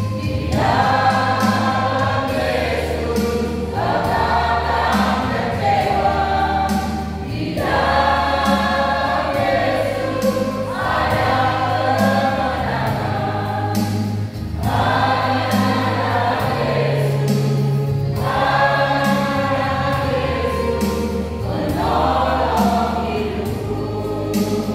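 Mixed choir of men's and women's voices singing a hymn in phrases of a few seconds, with short breaks for breath between them. Steady low bass notes sound underneath and change every few seconds.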